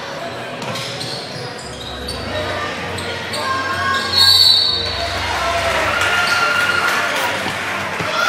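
A basketball bouncing on a hardwood gym floor during play, among players' and spectators' voices, with a short high squeal about four seconds in.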